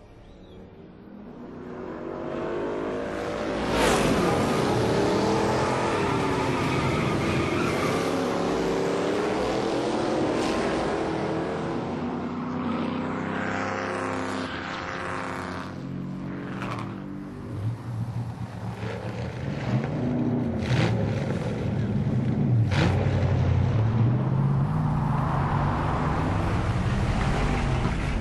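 A car engine running hard, revving up and down in pitch, swelling in over the first few seconds, with a few sharp knocks later on.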